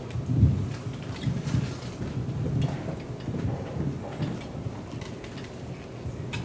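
Handling noise from a handheld microphone being passed to the next speaker: irregular low rumbles and bumps, with a few faint clicks.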